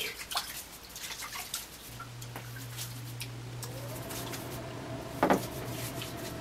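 Water splashing and dripping into a sink as hands splash water onto a face, in small irregular bursts. A steady low hum joins about two seconds in, and there is a louder knock near the end.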